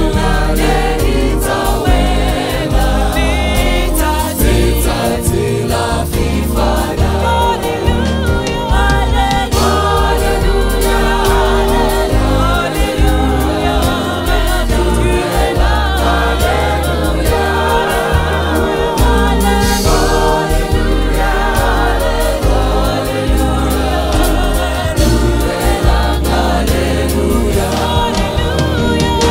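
Live gospel music: a vocal group singing in harmony, with lead voices, backed by keyboard and drum kit.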